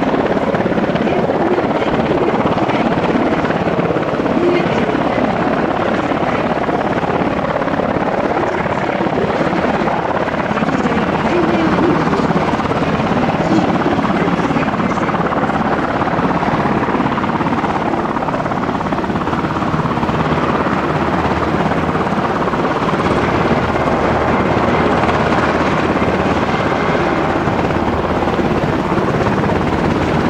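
A UH-60JA Black Hawk helicopter running on the ground with its twin turboshaft engines and rotors turning, a steady, loud noise that holds without change.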